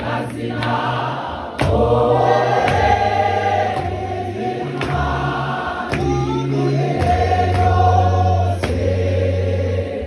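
Large mixed choir singing a hymn in Xhosa in full harmony, with long held notes and deep bass voices, marked by several sharp beats.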